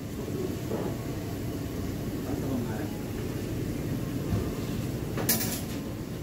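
Kitchen background noise: a steady low rumble with faint voices, and one sharp click or clatter a little past five seconds in.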